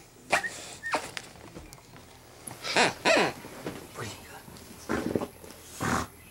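A bulldog making a series of short vocal sounds. The longest, about three seconds in, slides down in pitch.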